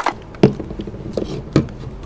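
A few light knocks and taps of household items being handled and set down, with a plastic basket among them: short, separate sounds about half a second in and again near the middle.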